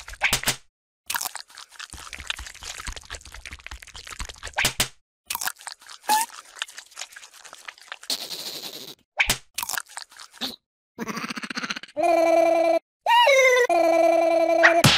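Cartoon crunching and chewing sound effects of a larva eating watermelon, in several runs of rapid crackling. Near the end comes a held, pitched vocal sound from a cartoon larva, which dips in pitch once and then carries on.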